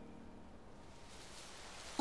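Faint, quiet woodland hush: a soft even rushing noise, with no distinct events, that swells a little in the second half.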